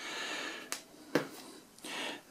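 A small white plastic extender box is handled and set down on a table: a brief soft scraping rustle, then two sharp light clicks about half a second apart.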